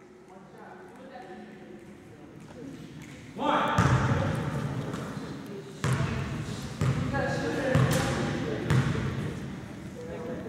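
A basketball bounced on a hardwood gym floor about once a second, the dribbles before a free throw. Voices fill the hall from about three seconds in.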